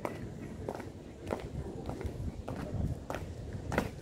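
A Guardsman's studded drill boots striking wet stone flagstones in measured marching steps, about one every two-thirds of a second, ending in a louder stamp near the end as he comes to a halt.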